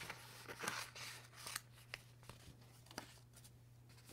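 Small scissors snipping through paper, with paper rustling in the first second or so, then a few light clicks as the cut paper is handled.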